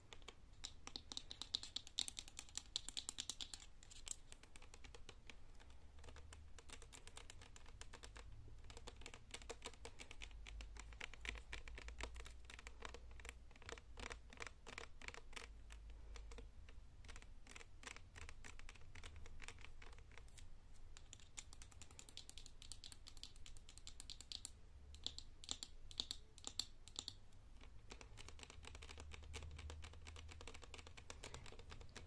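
Long fake nails tapping and scratching on a plastic shower-gel bottle: a faint, dense run of light, rapid clicks, busier near the start and again in the last third.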